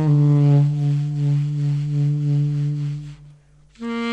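Alto saxophone holding a long, low note near the bottom of its range; the note fades out about three seconds in. After a brief gap, the saxophone comes back in on a higher note just before the end.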